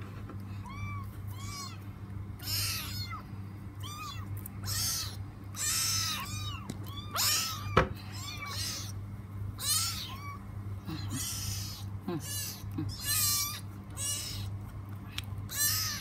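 A kitten mewing over and over in short, high-pitched cries, about one a second.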